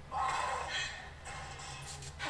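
Dramatic film score from a movie clip played back over a PA, coming in sharply just after the start and easing off after about a second.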